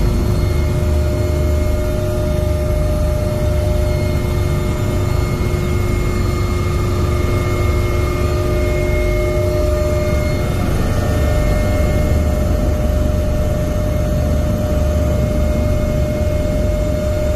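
Helicopter turbine engines and rotor heard from inside the cabin: a loud, steady low rumble with high whining tones. One of the whine tones drops out about ten seconds in, around the time the helicopter lifts off.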